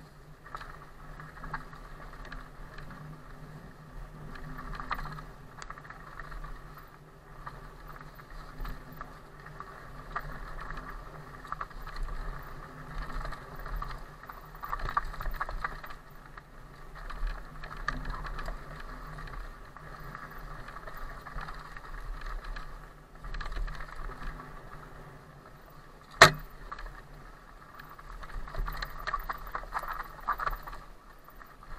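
Cube Stereo Hybrid 160 electric mountain bike ridden along a dirt forest trail: tyre and trail noise with frame and drivetrain rattle, a faint steady hum underneath, swelling and easing with the terrain. One sharp knock about 26 seconds in, the loudest sound, as the bike hits something on the trail.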